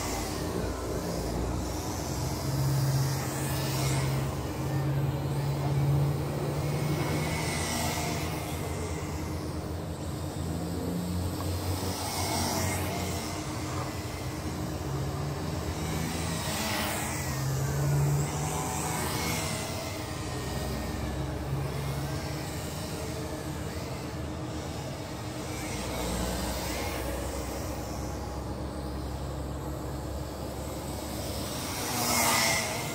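UTO U921 camera quadcopter's motors and propellers whirring in flight, the pitch rising and falling as it is throttled and steered, with a few swooping passes.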